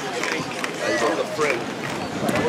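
Indistinct voices of passers-by talking, in short snatches with no clear words, over steady street noise.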